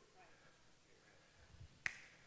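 Near silence in a pause, broken near the end by a single sharp click.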